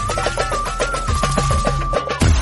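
Background music: fast, regular drum strokes under one long held high note. The note wavers and then settles a little lower about halfway through.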